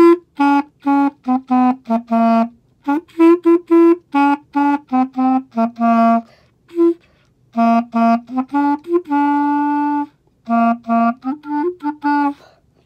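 Clarinet played in short, detached notes making a simple tune, with two brief pauses and one longer held note about nine seconds in.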